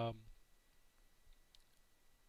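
A man's drawn-out 'um', then near-silent room tone with one faint click about one and a half seconds in.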